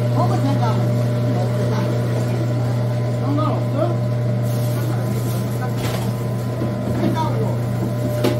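Electric stainless-steel food grinder running steadily with a low motor hum as pears, apples and radish are ground for kimchi seasoning, with a few short bursts of noise in the second half.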